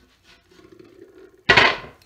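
Wooden crate set down on a bench: a single sudden knock and clatter of wood about a second and a half in.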